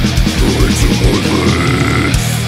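Old-school death metal track playing: heavily distorted guitars and rapid kick drumming under guttural growled vocals.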